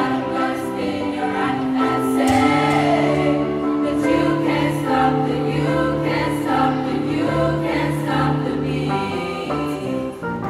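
A girls' school choir singing an upbeat show tune in harmony, holding long notes over a rhythmic keyboard accompaniment.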